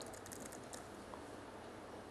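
Faint keystrokes on a computer keyboard: a quick run of taps in the first half-second, then a few scattered ones, as a short command is typed at a terminal prompt.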